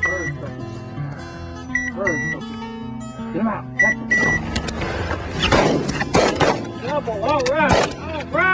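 A few shotgun shots in the second half, sharp cracks that are the loudest sounds, over background guitar music.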